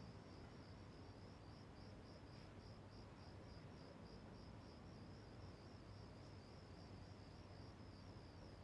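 Faint crickets chirping in a steady, evenly pulsed rhythm over near-silent room tone.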